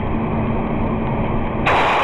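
Steady, rough background rumble and hum of a gas station's surveillance-camera audio. Near the end it is cut by a loud, harsh burst of noise lasting under a second.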